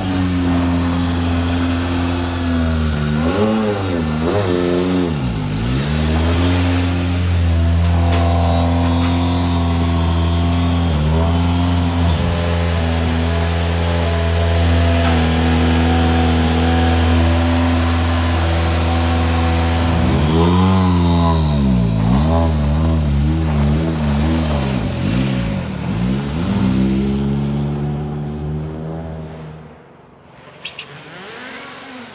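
Hyundai i20 Coupe WRC rally car's turbocharged four-cylinder engine running, with its pitch swooping down and back up about 4 seconds in, briefly near 11 seconds, and repeatedly between about 20 and 27 seconds. It fades near the end.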